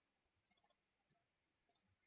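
Near silence, with faint computer mouse clicks in two small clusters: one about half a second in, one near the end.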